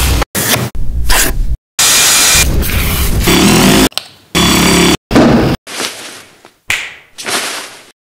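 A fast run of short DIY work sound effects cut hard one after another: about eight blocks of noise, most under a second, the longest about two seconds, each stopping abruptly. The sounds grow quieter over the last three seconds.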